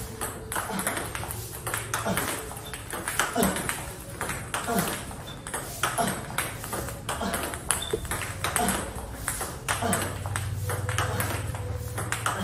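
Celluloid-type table tennis ball clicking off rubber-faced bats and bouncing on the table in a steady drill rally, about two sharp clicks a second: backspin balls being looped back with topspin.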